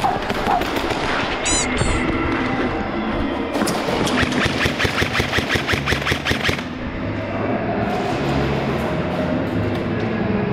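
Airsoft gun firing a rapid string of shots for about three seconds, starting about three and a half seconds in, over a steady music bed.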